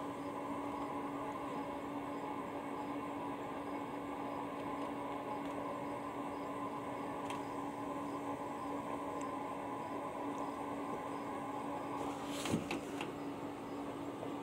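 A steady mechanical hum with one constant low tone that does not change.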